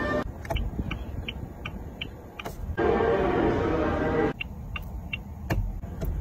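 A car's turn-signal indicator ticking steadily, about three ticks a second, broken by a louder rush of noise lasting about a second and a half in the middle.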